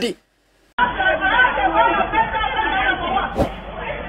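A sudden drop to silence, then, from just under a second in, a group of voices chattering over one another. The sound is muffled, thin phone-video audio.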